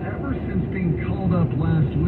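A voice talking from the car radio, with steady road and engine rumble in the cabin of a car at highway speed.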